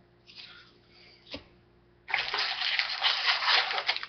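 A foil trading-card pack wrapper crinkling as it is torn open. It starts suddenly about halfway through, after a single soft click, and goes on as dense crackling.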